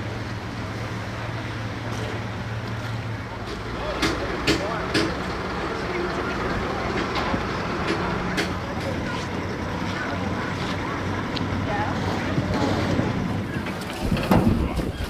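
Pit-area ambience at a banger race meeting: an engine idling steadily, indistinct voices in the background and wind on the microphone, with a few sharp knocks.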